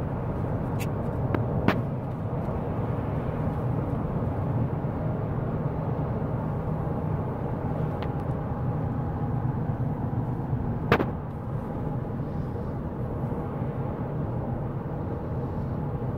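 Steady road and engine noise inside a moving car's cabin, with a few sharp clicks, the loudest near two seconds in and about eleven seconds in.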